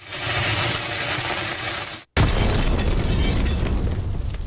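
Sound effect of a lit fuse hissing for about two seconds, then cutting off into a loud explosion whose low rumble slowly fades.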